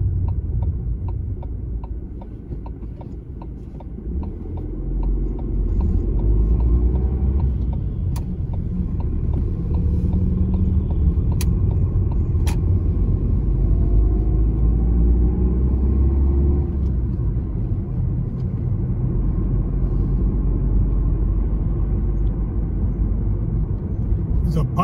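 Car cabin noise while driving: a steady low engine and road rumble. It is quieter for about two seconds near the start, then louder and steady as the car drives on. Three sharp clicks are heard in the middle.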